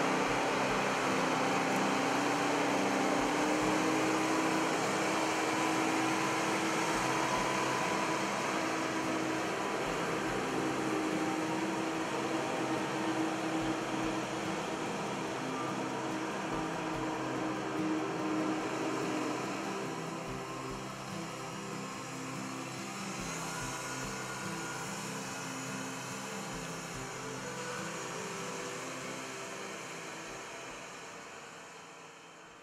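Diesel engine of a Case IH MX340 tractor running steadily as the tractor drives over gravel, growing somewhat quieter about two-thirds of the way through.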